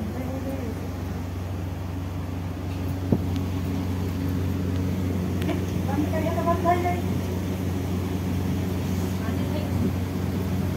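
People talking and laughing over a low, steady hum, with one sharp tap about three seconds in.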